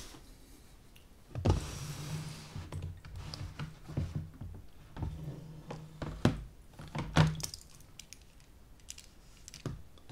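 Handling of a thin acetate plate wrapped in aluminium foil over a plastic tub: a short rustling rush about a second and a half in, then a string of sharp clicks, taps and knocks as the flexing sheet is lifted out and laid down on a wooden table.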